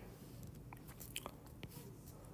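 A handful of faint, scattered ticks of a stylus tip tapping and sliding on a tablet's glass screen as handwriting is drawn, over low room noise.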